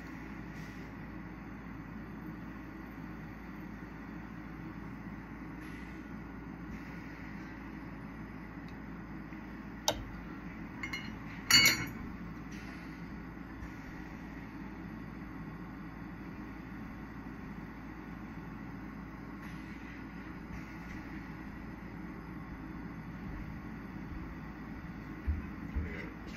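Glassworking bench torch burning with a steady hiss as a clear glass rod is heated in the flame. About ten seconds in there is a sharp click, and a moment later a brief, louder clink of glass.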